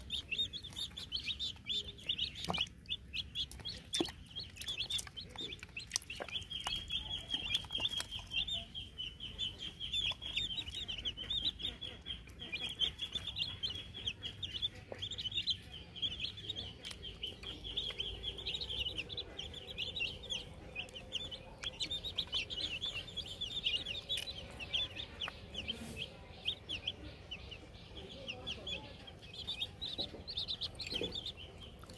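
Many chicks peeping continuously in a dense, high-pitched chorus of short chirps.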